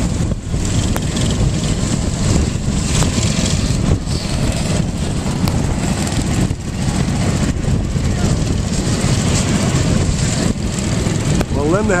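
Several go-kart engines running steadily as the karts circle the track.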